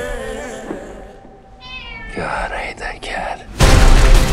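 A cat meowing in a hush, a short call and then a longer, wavering one. Loud music cuts back in sharply near the end.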